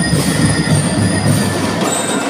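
Marching band playing: drums under a melody of held, ringing notes from marching bells (bell lyres).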